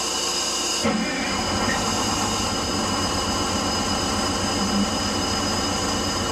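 A Detroit Diesel 6-71 two-stroke diesel in a school bus is cranked, catches about a second in and settles into a steady idle, running on only five of its six cylinders. A steady low-air-pressure warning buzzer sounds over the engine because the brake air tank has not yet built pressure.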